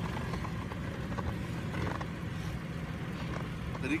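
Large SUV's engine idling steadily with a low, even hum.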